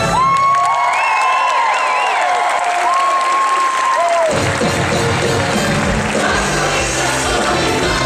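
Live musical-theatre cast singing, several voices holding long high notes over a thinned-out accompaniment with no bass. About four seconds in, the full band comes back in with bass and a beat. Audience cheering and applause run underneath.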